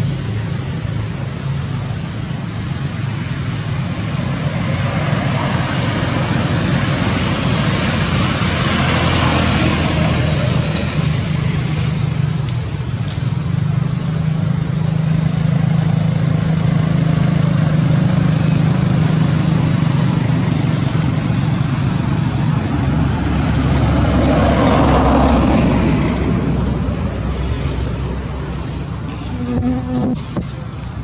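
Steady rushing background noise with a low rumble, swelling twice: about a third of the way in and again around 25 seconds.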